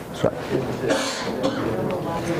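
A person coughs once about a second in, preceded by a short knock.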